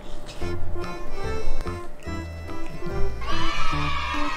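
Light background music with plucked notes over a stepping bass line. About three seconds in, a long, wavering high cry comes in over the music and is still going at the end.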